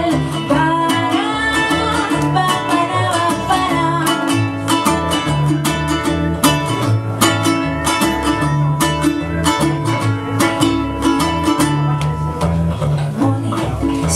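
A ukulele strummed in a steady rhythm over a plucked upright double bass line, with a woman singing over them during the first few seconds.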